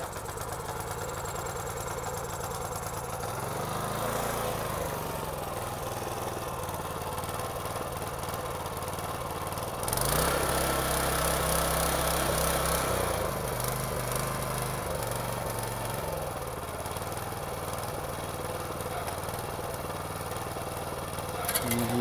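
Shibaura KS401 4 hp tiller's small engine, just recoil-started on choke, fires up and runs at a steady idle. About ten seconds in it is opened up to a louder, faster run for a few seconds, then eases back down to idle.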